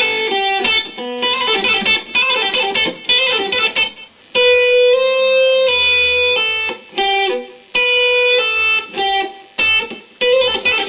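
Stratocaster-style electric guitar playing a fast hybrid-picked lick on the top two strings. Pick and fingers pluck the notes, with hammer-ons and pull-offs between the 5th and 8th frets. The same short phrase is played over and over, with brief breaks between passes.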